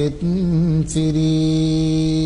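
A Buddhist monk's voice chanting Sinhala verse in the kavi bana style. The slow melody wavers in pitch, breaks briefly, then settles into one long steady held note from about a second in.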